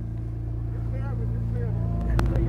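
Jeep Wrangler's engine running at low, steady revs as it crawls up a rock ledge, with faint voices in the background.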